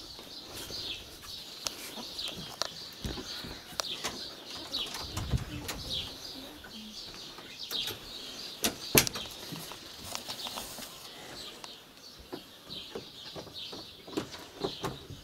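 Small birds chirping, many short high chirps in quick succession. Scattered clicks and knocks come through it, with a sharp knock about nine seconds in the loudest sound.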